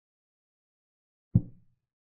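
A single short, low thud about a second and a half in, fading quickly: a chess board program's move sound effect as a piece is played.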